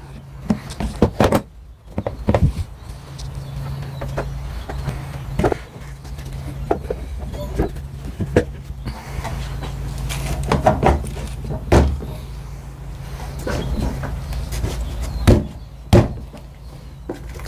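Scattered knocks and clunks of a plywood cart top and plastic shop-vac parts being set down and fitted together, over a steady low hum.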